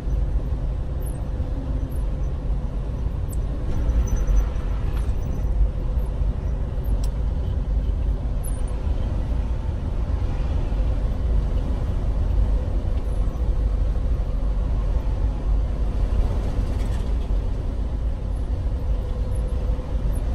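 Steady low rumble of a vehicle on the move, heard from inside its cab, with a constant droning hum over it.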